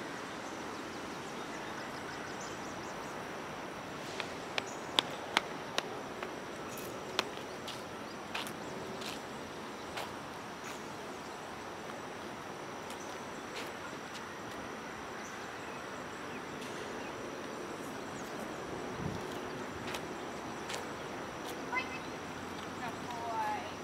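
Steady outdoor background noise with a faint, steady high-pitched tone throughout. A quick run of about seven sharp clicks or taps comes roughly four to seven seconds in, a few fainter ones later.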